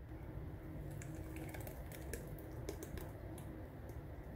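Thick blended green chutney pouring from a blender jar into a glass bowl, heard as a faint run of small quick clicks and splats from about a second in.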